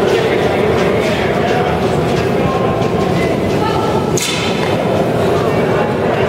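Curling brooms scrubbing the ice ahead of a sliding curling stone, with the running noise of the stone and of a busy rink under it and voices in the background. A short sharp sound comes about four seconds in.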